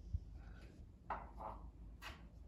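Quiet kitchen room tone with a single soft tap just after the start and faint, indistinct sounds around the middle.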